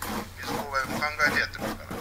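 A short, wordless vocal sound from a person, higher than the surrounding talk, its pitch climbing, from about half a second in to about a second and a half.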